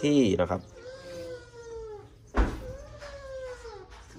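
Bamboo rat giving two drawn-out whining calls, each about a second long, wavering and sliding down in pitch. A soft thump comes just before the second call.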